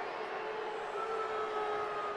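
Ballpark crowd murmur as a steady bed of noise, with a faint held tone starting shortly in and lasting about a second and a half.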